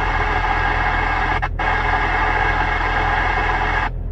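FM receiver static hiss from a mobile VHF amateur radio being stepped through NOAA weather radio channels where no voice is coming through. The hiss briefly drops out about one and a half seconds in as the channel changes, then cuts off just before the end, over a low steady hum.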